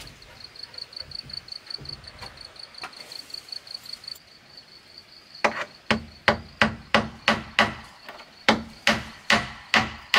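Claw hammer driving a nail through a wooden plank into a wooden post. It is a steady run of sharp strikes, about three a second, starting about halfway in.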